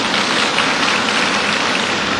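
Heavy rain falling, a steady even hiss.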